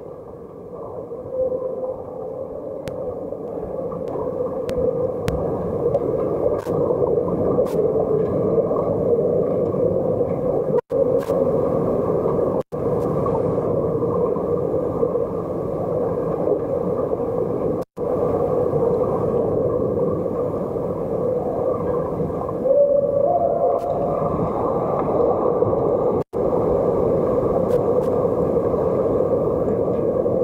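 Muffled underwater pool noise picked up by a submerged camera: a steady rushing hiss from finning swimmers and bubbles that grows louder over the first few seconds, with faint clicks. The sound cuts out suddenly for a moment four times.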